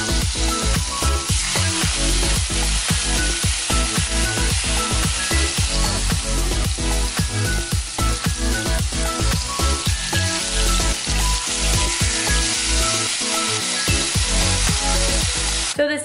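Chicken breasts sizzling as they fry in a hot pan, a steady hiss that cuts off just before the end, heard under background music with a regular beat.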